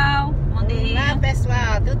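Women's voices talking and greeting over a steady low rumble of a car, heard from inside the cabin.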